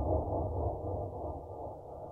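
Deep, muffled, rumbling horror-style sound effect, slowly fading away.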